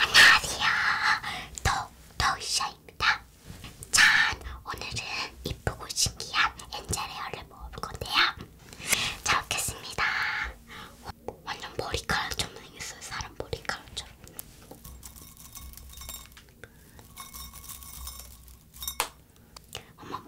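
A girl talking softly in a whisper, in short phrases. Later come faint scattered clicks as brittle spun-sugar angel-hair candy is handled.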